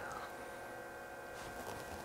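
Quiet room tone with a faint, steady electrical hum made up of several steady tones.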